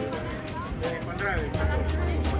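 A person's voice over background music with a steady low beat.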